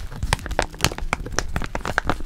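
Paper-and-plastic packaging pouch being handled and flexed in the hands, crinkling and crackling in quick, irregular bursts.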